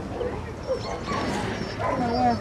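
A dog whining and yipping in short, high, wavering calls.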